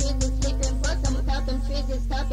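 Hip hop beat playing without vocals: a steady bass and sustained keyboard tones under fast, even ticks about five a second.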